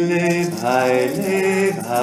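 A voice chanting an icaro, holding long sung notes that slide into pitch, over a rattle shaken in a fast, even rhythm.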